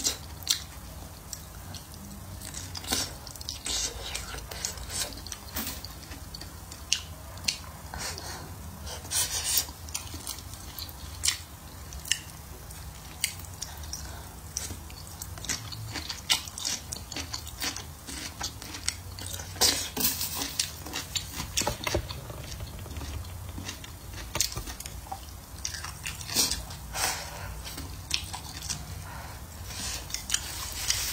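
Close-miked chewing and biting of soft braised eggplant, chicken and blistered green peppers, with many irregular sharp, wet mouth clicks throughout.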